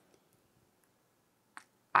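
Near silence: a pause in speech, with one short, faint click about one and a half seconds in.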